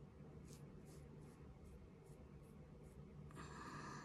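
Faint rubbing of a microfiber makeup-removal cloth on the skin of the brow, wiping off eyebrow makeup. There are short strokes about twice a second, then a longer, louder rub near the end.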